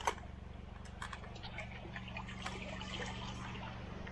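Muddy floodwater running into the inlet of a black corrugated plastic culvert pipe: a steady run of small splashes and drips over a low steady hum.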